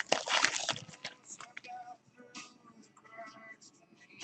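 Crinkling and rustling of a trading-card pack wrapper and cards being handled, a quick cluster of crackles in the first second. After that, only faint background music with singing.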